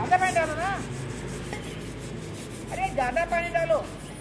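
Scrubbing and scraping against stone paving, many quick rubbing strokes in a row. Two high wavering cries rise over it, one at the very start and a longer one about three seconds in.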